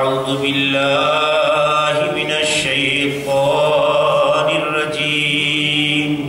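A man's voice chanting Arabic in long, drawn-out notes held at a steady pitch: three phrases, a long one, a short one and a last one of about three seconds.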